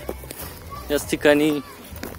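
A person's voice, briefly, about a second in, over a steady low rumble.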